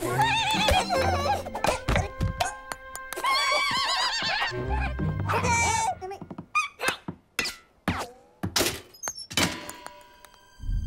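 Cartoon soundtrack: music under wavering, warbling vocal cries from the cartoon turtles and a run of thunks during the first half. The second half thins out to a string of separate knocks and clicks with short gaps between them.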